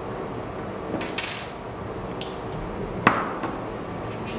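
Small metal parts of an Eleaf iStick box mod being handled and fitted: a few light metallic clicks and clinks with a short scrape, the loudest click, with a brief ring, about three seconds in.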